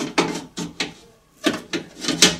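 Short knocks and clicks, about half a dozen, from a car door's window glass and inner door parts being handled as the glass is worked back into the door.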